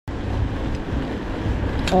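Wind buffeting the microphone of a bicycle-mounted camera while riding, over road noise, with a short click just before the end.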